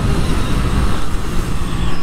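Yamaha YZF-R7's 689 cc parallel-twin engine running at track speed, heard from on board the motorcycle under heavy wind rush on the microphone.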